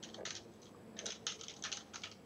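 Computer keyboard typing: a quick, uneven run of about a dozen key clicks as a terminal command is keyed in.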